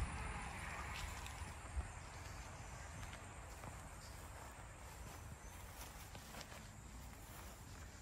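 Faint outdoor ambience: a steady low hiss of background noise with a few soft footsteps.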